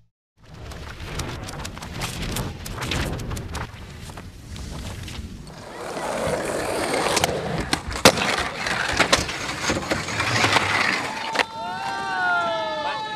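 Skateboards rolling on asphalt, with many sharp clacks of decks popping and landing; it gets louder after about six seconds.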